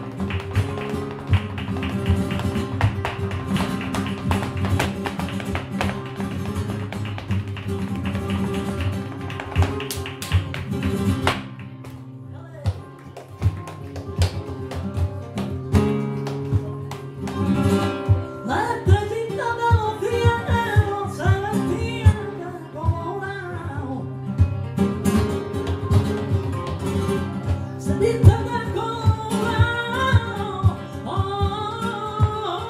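Live flamenco: a dancer's fast zapateado footwork, heels and toes striking a wooden stage, over two flamenco guitars. The footwork thins out about 11 seconds in, and from about 18 seconds a woman's flamenco singing comes in with the guitars and sharp struck beats.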